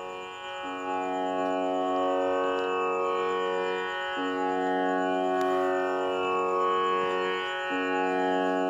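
Tanpura drone: sustained strings holding a steady pitch, re-sounding together about every three and a half seconds, as the pitch drone for Carnatic singing.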